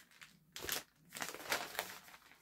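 Plastic mailer bag crinkling as it is handled: a short rustle about half a second in, then a longer one from about a second in.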